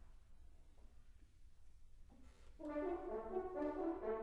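A hushed pause in the hall. About two and a half seconds in, the wind orchestra's brass comes in with loud, sustained chords.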